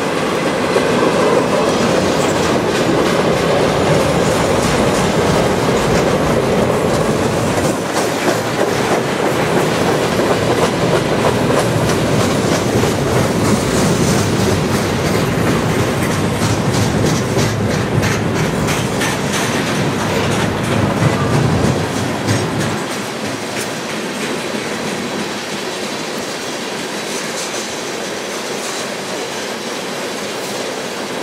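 Freight cars of a long mixed train rolling past at speed: a steady rumble of steel wheels on rail, with repeated clickety-clack of the wheels over rail joints. About three-quarters of the way through, the deep rumble falls away and the sound becomes somewhat quieter.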